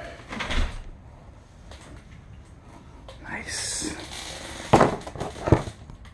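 Handling noise: a soft thud about half a second in, a brief rustle in the middle, and two sharp knocks near the end as the rifle and camera are moved around.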